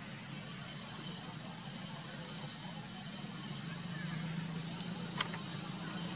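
A motor running steadily with a low hum that grows a little louder in the second half, over outdoor background hiss. One sharp click comes about five seconds in.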